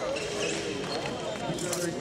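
Thuds of fencers' footwork on the piste, with indistinct voices in the hall behind them and a sharp knock near the end.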